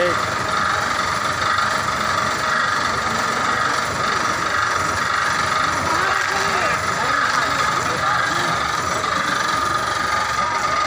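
Diesel bus engine idling close by, a steady drone with a constant hum, with people's voices over it.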